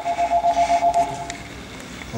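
A steady high tone pulsing quickly, about seven times a second, that stops about a second and a half in.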